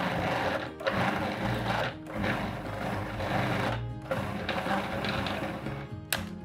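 Food processor pulsed in four bursts of one to two seconds each, with short breaks between, mixing sweet pastry dough after an egg has been added.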